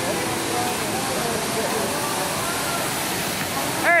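A steady rushing noise, like running water, at an even level, with faint voices in the background and a brown paper wrapper crinkling as it is handled.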